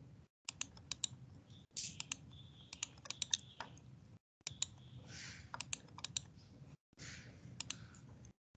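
Faint computer keyboard typing and mouse clicks: a string of sharp key and button clicks over a low hum, cut by a few brief dead silences where the call's noise suppression mutes the microphone.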